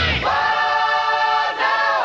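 Hard rock song breaking to a held, multi-voice sung harmony chord, with the bass and drums dropped out.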